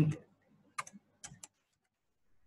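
Computer keyboard being typed on: a handful of quick keystroke clicks in two small clusters, about a second in.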